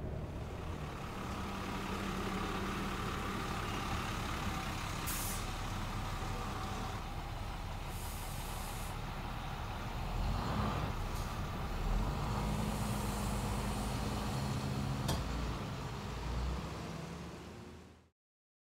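City bus engine running, with a short hiss of its air brakes about five seconds in and a longer one around eight seconds. The sound fades out at the end.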